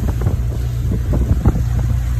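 Motor boat underway, its engine running at a steady cruising drone, with wind gusting and buffeting on the microphone.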